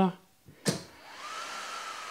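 A click, then a cooling fan spinning up with a rising whine that settles into a steady whir as the Zero electric motorcycle starts charging.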